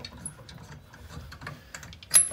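Socket ratchet clicking as lug nuts are run onto a car wheel's studs: a series of light, quick clicks.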